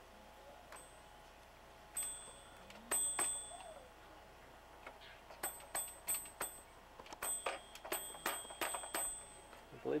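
Small bell on a child's toy train dinging: two single rings, then a quick run of four, then a run of about six more, each a sharp high ding with a short ring.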